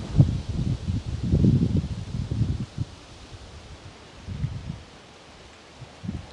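Close, irregular rustling and brushing, dull rather than crisp, in bursts over the first three seconds and again briefly a little past four seconds.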